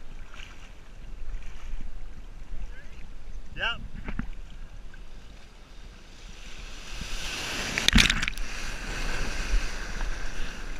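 Ocean surf sloshing around a camera held at water level, then a wave breaking and washing over it, rising from about seven seconds in to a loud splash near the eight-second mark.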